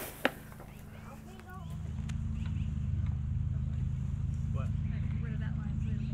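Two sharp knocks at the very start, then from about a second and a half in a steady low engine drone that swells and holds, like a vehicle engine idling.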